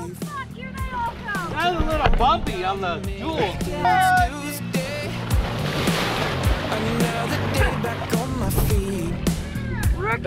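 Background music with a sung vocal and a steady bass line. Midway, a rush of splashing water as a body slides into a shallow pool at the end of a slip and slide.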